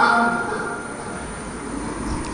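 A man's chanted prayer voice over the mosque loudspeakers holds a long note and fades out in the first half second. It leaves a steady low rumble of the large, echoing prayer hall.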